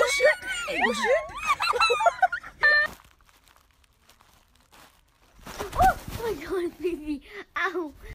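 Several people shrieking and laughing in high voices, stopping about three seconds in. After a short quiet gap, a sudden loud rustling burst comes, followed by more voice sounds.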